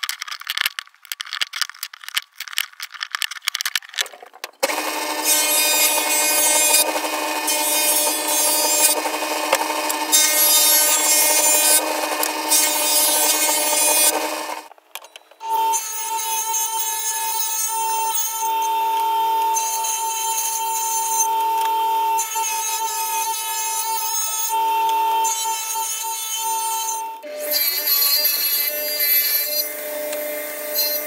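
Wooden strips clattering as they are handled on a workbench, then a table saw running and ripping a wooden strip lengthwise, a loud steady whine that dips briefly about halfway through.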